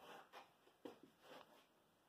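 Near silence broken by about four short, faint rustles and bumps as the phone recording the scene is handled and moved.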